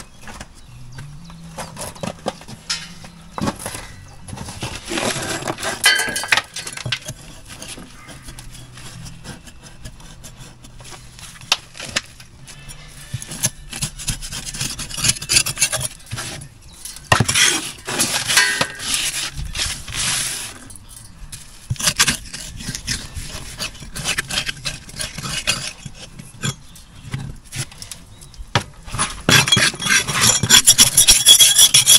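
Steel trowel scraping and knocking loose mortar and rubble off the top of old brickwork, in irregular bursts of scraping with sharp clinks and knocks of falling bits.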